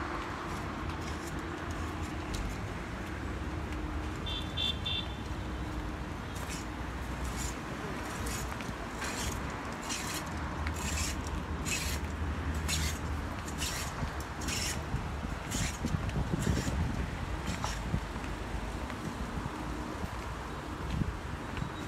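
Steady low rumble of city traffic with some wind on the microphone. From about six seconds in there are regular footsteps on hard paving, roughly one every half second or so. Earlier there is a brief high chirp, a little after four seconds.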